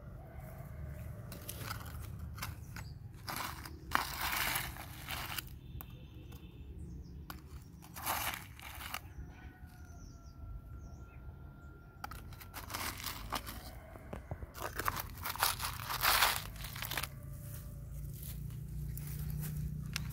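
Plastic toy shovel scraping and scooping into a heap of gravel and stones: a series of gritty crunching scrapes, each lasting up to a second or so, with quieter gaps between.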